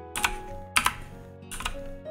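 Computer keyboard keys pressed in three quick clusters of clicks, about two-thirds of a second apart, over soft background music holding sustained notes.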